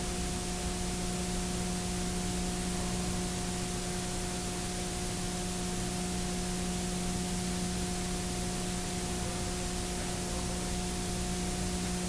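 Steady hiss with a low, even hum underneath: the recording's background noise, with no other sound standing out.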